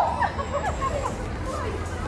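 A startled scream ending right at the start, then passers-by exclaiming and chattering in reaction, over general street hubbub.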